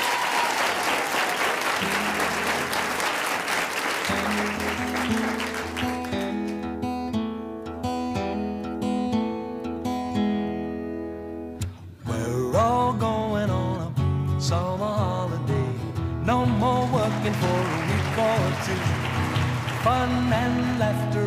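Audience applause fades out over the first few seconds as a steel-string acoustic guitar starts strumming chords. About twelve seconds in, a man starts singing over the guitar.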